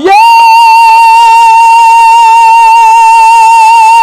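A male rasiya folk singer, amplified through a stand microphone and PA, holding one long, loud high note with a slight waver, after a quick upward slide into it.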